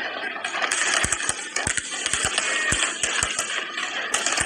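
Fireworks display: aerial shells bursting in rapid, irregular bangs over a continuous crackling hiss.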